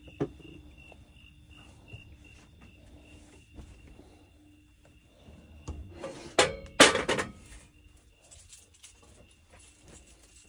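Crickets chirping in a steady pulse that fades out a few seconds in, with a click at the start. About six seconds in comes a loud burst of metal clanking as a cast-iron grill pan is set down on the grates of a gas stove.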